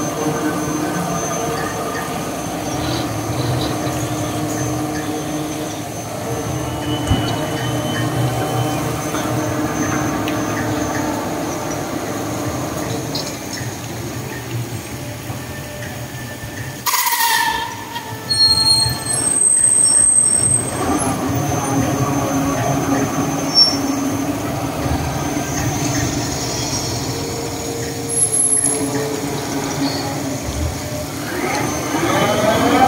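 An aging Top Spin thrill ride running its cycle: a steady mechanical hum from its drive, with creaks from the moving structure. A little past halfway comes a loud creak that falls in pitch, followed by a high squeal.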